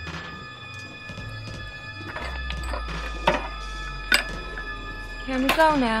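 Quiet ambient track intro on a brutal death metal album: a low steady drone with held tones and scattered sharp clicks and knocks. Near the end a sampled voice says "Yeah."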